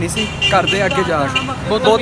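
A man's voice talking, with a steady low hum of street traffic behind it.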